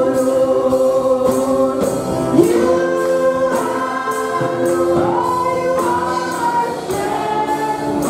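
Live gospel worship song: a group of voices sings through microphones over a steady percussion beat, about two beats a second.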